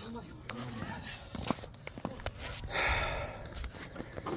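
Footsteps on gravel with faint, indistinct talk, a few sharp clicks about a second and a half in, and a short breathy hiss around three seconds.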